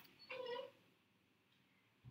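One short, high-pitched vocal call lasting about half a second, near the start; the rest is near silence.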